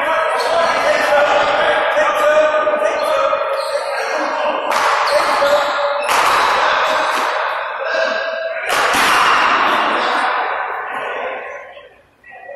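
Sharp smacks of a paddleball rally, a rubber ball struck by paddles and slapping the front wall, ringing with echo in a large indoor court. The loudest hits come in the second half, with a steady voice-like tone under the first half.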